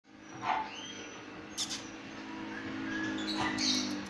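Short, high-pitched squeaks and whines from small animals over a steady low hum.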